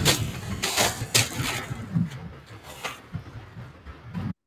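Wind buffeting the microphone on an open beach, with several short sharp crunches or rustles: a cluster in the first two seconds and one more near three seconds.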